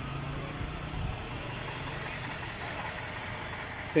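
A motor vehicle's engine idling: a steady low hum that fades about a second in, over steady outdoor background noise.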